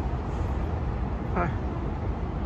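Steady low rumble of city road traffic, with a brief vocal sound about one and a half seconds in.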